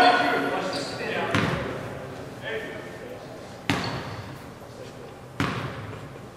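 Basketball bouncing on a hardwood gym floor: three single bounces about two seconds apart, each echoing through the hall, over voices from players and spectators that are loudest in the first second.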